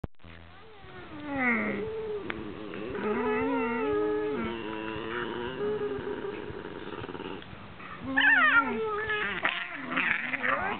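An Italian greyhound and a whippet play-fighting and 'talking': long, wavering growl-moans that slide up and down in pitch, broken near the end by a burst of higher, sharply falling yelps.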